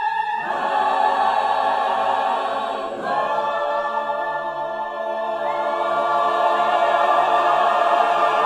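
Mixed chamber choir singing long sustained chords, moving to a new chord about three seconds in and growing louder toward the end.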